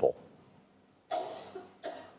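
A person coughing twice: a longer cough about a second in, then a short one just before the end.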